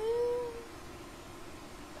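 A girl's drawn-out vocal sound that glides upward in pitch and ends about half a second in, with a meow-like quality. After it comes quiet room tone with a faint steady hum.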